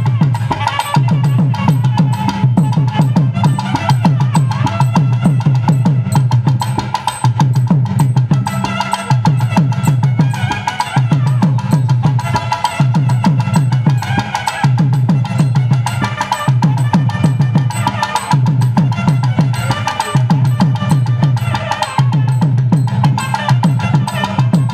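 Live Tamil folk music for a kummi-kolattam dance. A double-headed barrel drum beats a rhythm that repeats about every one and a half seconds. Over it runs a steady melody from a brass-belled wind instrument and voices.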